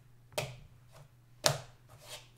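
Two short, sharp taps of a paintbrush dabbing onto watercolour paper, the second louder, about a second apart.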